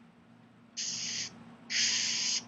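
Two short hissing bursts of noise, each about half a second long, starting about three-quarters of a second in; the second is louder and longer.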